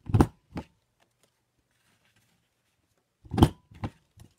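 Corner rounder punch pressed down on cardstock corners, making sharp clunks: two close together at the start and two more near the end, the loudest of them about three and a half seconds in.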